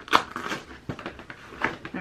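Cardboard advent-calendar box being handled and torn open by hand: a few short crunching and crinkling sounds of card and packaging.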